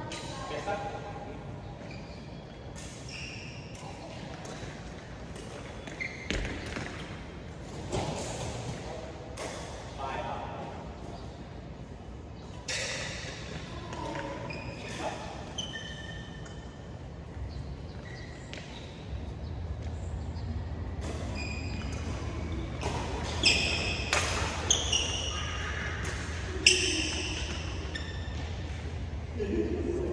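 Badminton rally in an echoing sports hall: sharp racket strikes on the shuttlecock scattered throughout, short high squeaks of court shoes on the floor, and voices in the background. The strikes and squeaks come thickest toward the end, and a low steady hum sets in about two-thirds of the way through.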